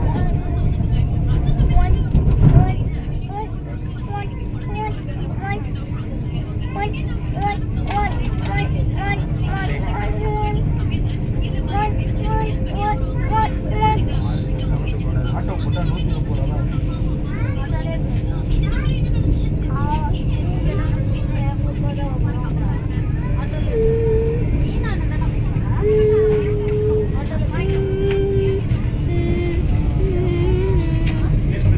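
Running noise of the Vande Bharat Express electric train set heard from inside the coach: a steady low rumble with a constant hum over it, and a loud knock about two seconds in. Passengers' voices are heard over the rumble.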